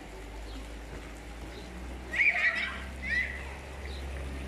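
Short, high-pitched shrieks of voices at play, one burst about two seconds in and a shorter one about a second later, over a low steady hum.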